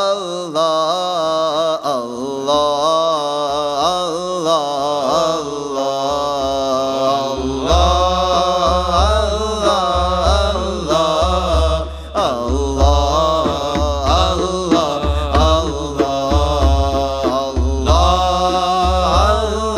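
Sufi devotional chant sung by a voice with long, wavering held notes, with a low, pulsing beat joining in about seven seconds in.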